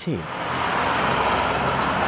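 Noise of a passing road vehicle: engine and tyre sound that swells over the first half second and then holds steady.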